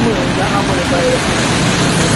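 Loud, steady roadside noise, an even hiss, with faint voices talking in the background.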